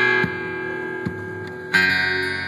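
Cutaway Takamine acoustic guitar, capoed at the second fret, played without singing: a strummed chord at the start is left to ring and fade, a single light note sounds about a second in, and a new chord is strummed near the end.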